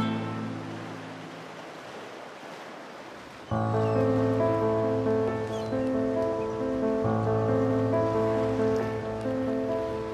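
Background score of a TV drama: a soft rushing noise like surf for about the first three seconds. Then sustained, string-like music with a steady bass comes in suddenly and carries on.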